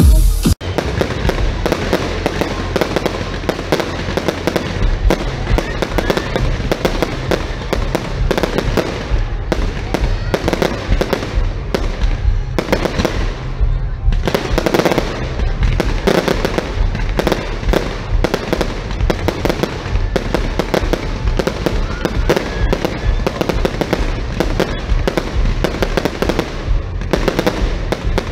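Fireworks display: dense, continuous crackling with rapid pops and bangs, with louder flurries about halfway through. At the very start, live concert music cuts off abruptly.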